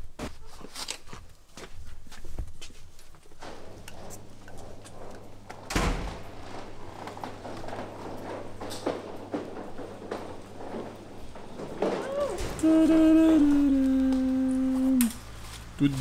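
Footsteps and scattered knocks and thuds in a warehouse, with one louder thud about six seconds in. Near the end, a person's voice holds one long note for about two and a half seconds, stepping down in pitch partway.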